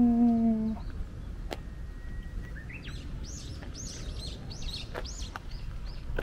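A drawn-out, slowly falling vocal "ー" ends under a second in; then, from about two and a half seconds in, a bird chirps in a quick run of short, high, arched notes, with a few faint clicks.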